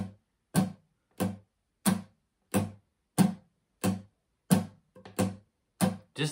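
Acoustic guitar, capoed at the third fret, strummed in a simple even down-up pattern. About ten short chord strokes come at a steady pace of roughly one and a half a second, each dying away before the next.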